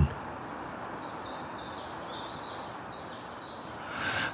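Outdoor ambience: a steady background hiss with small birds chirping repeatedly, short high-pitched notes throughout.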